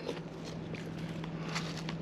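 Footsteps of a person walking, with a steady low hum underneath.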